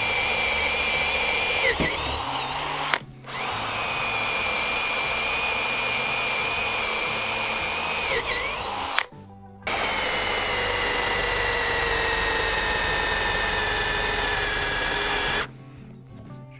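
Makita HP457DWE 18V cordless drill-driver in low gear boring into wood, its motor a steady high whine. It runs in three stretches broken by two short gaps. The pitch dips briefly as the bit bites and sags gradually in the last stretch as the motor slows under load.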